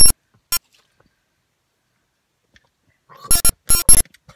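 Short bursts of electronic tones, like a ringtone or alert: one at the start and a quick blip about half a second in, then quiet, then a cluster of blips near the end.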